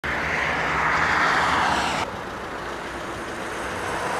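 Traffic noise from a vehicle passing on a road: a loud swell of tyre and engine noise for about two seconds that cuts off suddenly, leaving a quieter steady roadside hum.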